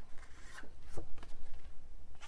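Cards being handled and drawn from a deck: faint rubbing of card stock with a few light taps.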